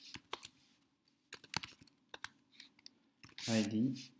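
Computer keyboard typing: a few separate keystrokes, a lull of about half a second, then a quicker run of keys.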